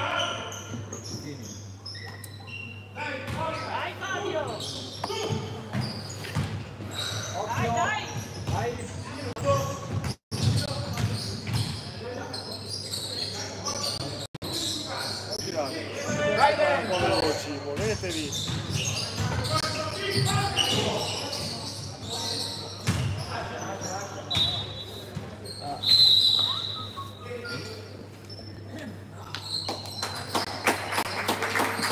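Basketball bouncing on a hardwood gym floor during play, with players' shouts and calls echoing in a large hall. A couple of short high squeaks come near the end.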